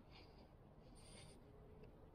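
Near silence: faint outdoor background with two soft, short scuffing sounds about a second apart.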